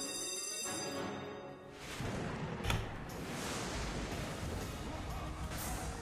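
Online slot game music and sound effects as four scatter symbols trigger the free-spins bonus. Held chime tones fade out in the first second, then a noisy swell and a single sharp hit come about three seconds in, followed by steady background game music.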